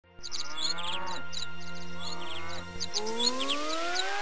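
Birds chirping over a steady music bed, then a rising tone sweep from about three seconds in.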